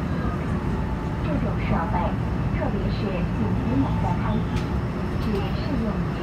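Steady low rumble of a subway train running on an above-ground track, heard from inside the carriage, with people talking over it.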